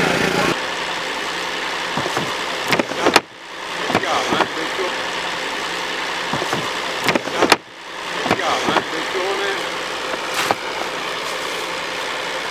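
A motor running steadily under faint, distant voices, with two sharp knocks about three and seven and a half seconds in.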